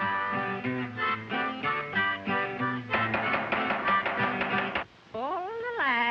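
Acoustic guitar picking a tune in single notes, turning to faster, denser playing about three seconds in. Near the end the guitar stops and a sliding, wavering pitched sound takes over.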